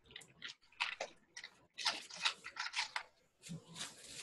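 Clear plastic packet of vintage buttons being handled, crinkling and rustling in quick, irregular crackles.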